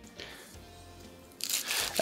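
A serrated knife starts sawing through a baked pain au chocolat about a second and a half in, and the flaky laminated crust crunches and crackles as it breaks. The croissant dough, made without egg, is crumbly. Faint background music sits underneath.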